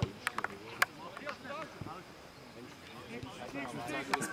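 A football kicked on a grass pitch, with a few more sharp knocks in the first second, and players' voices calling out across the field after it.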